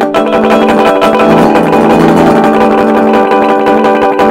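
Semi-hollow Epiphone Sheraton electric guitar through an Orange Crush 20RT amp, its natural harmonics strummed rapidly and ringing together in a steady shimmer of many sustained notes. This is the guitarist's take on a part the original plays with strummed 12-string harmonics.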